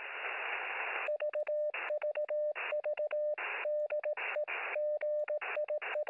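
Radio receiver static, then from about a second in a Morse code (CW) signal keyed in short and long elements, a single tone around 600 Hz alternating with bursts of hiss. It is heard through a radio's narrow audio passband.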